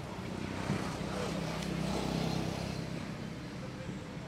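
Motor vehicle engine running in the background, growing louder over the middle seconds and then easing off, with a short knock just under a second in.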